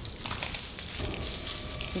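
Broken bottle glass crunching and clinking under bare feet stepping across a bed of shards.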